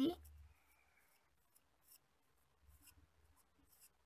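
Near silence with a few faint clicks and rubs from fingers handling a plastic ballpoint pen barrel.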